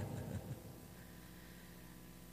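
Quiet room tone with a faint steady low hum, after a man's voice trails off in the first half second.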